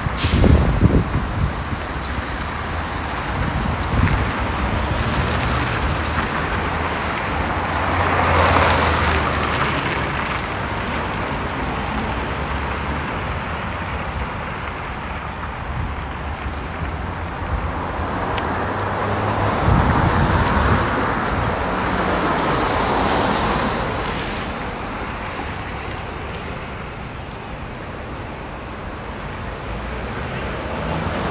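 City street traffic: cars passing on the avenue over a steady low rumble of engines, swelling and fading as vehicles go by, most clearly about eight seconds in and again around twenty seconds in.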